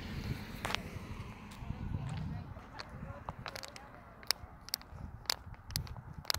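Wind buffeting an outdoor phone microphone, a steady low rumble, with scattered sharp clicks that come more often in the second half.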